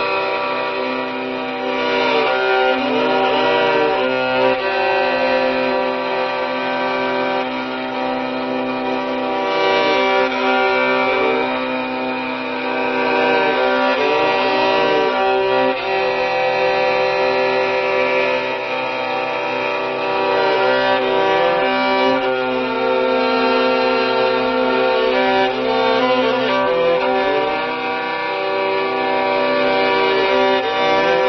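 Instrumental passage of a song: a violin plays a melody with sliding, curling ornaments over steady sustained tones.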